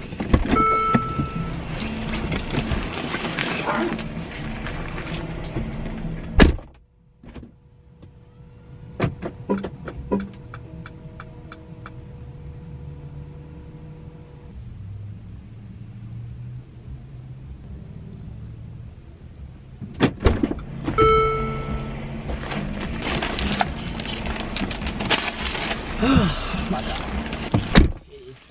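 Car door standing open to loud outdoor noise, a short tone sounding near the start, then the door shut with a heavy thud about six seconds in; inside the closed car it is much quieter, with a few light clicks. About twenty seconds in the door opens again with a thunk, the outdoor noise and a short tone return, and someone climbs back in.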